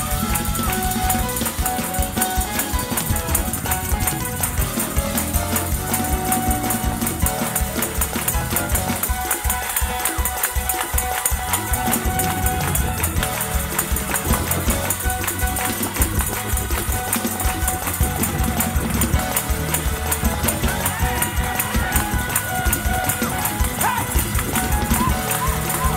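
Live gospel band playing a fast, driving praise break: drums, electric bass guitar, organ and keys, with the choir clapping along.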